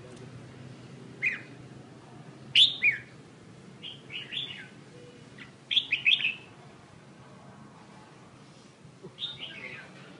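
A caged songbird chirping in short bursts of quick, falling notes, six times with gaps of about a second or more.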